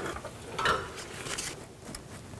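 Hand ratchet clicking in short strokes as it snugs down the nut on a new control arm bump stop.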